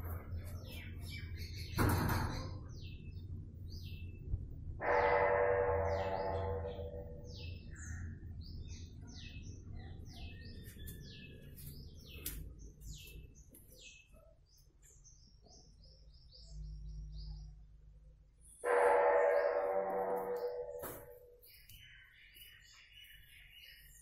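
Small birds chirping repeatedly in short high notes. A sharp click comes about two seconds in, and twice a louder, lower pitched tone sounds for about two seconds each, once about five seconds in and once near the end.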